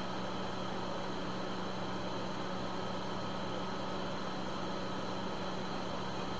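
Steady background hiss with a low, even hum and nothing else: room tone.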